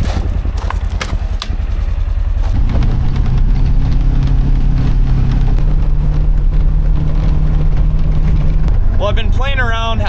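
Polaris Ranger XP side-by-side's engine running, with a few sharp clicks in the first second or so. It then speeds up as the vehicle drives off, its pitch stepping up about two and a half seconds in and again near the middle, then dropping back near the end. Heard from inside the cab.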